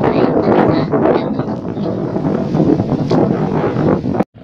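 Strong wind buffeting the microphone, a loud, gusting rumble.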